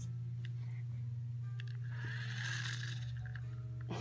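A wind-up toy monster truck running after release, heard faintly with a soft whir strongest in the middle, over a steady low hum.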